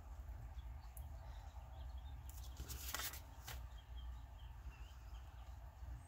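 Faint paper handling: light pen-on-paper scratching and a louder paper rustle lasting about a second near the middle, as the folded book-page pocket is turned on the cutting mat, over a low steady hum.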